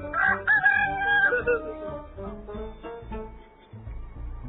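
A rooster crowing once, a long held call of about a second and a half that falls slightly at the end, over background guitar music.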